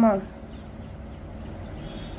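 The end of a spoken word in a woman's voice, then low, steady background noise.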